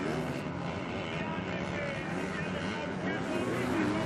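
Motocross bike engines revving up and down as the bikes race over the track, heard as a steady wash of engine noise.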